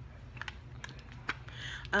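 Several light, irregular clicks and taps of a cosmetics box being handled and opened, over a faint steady low hum.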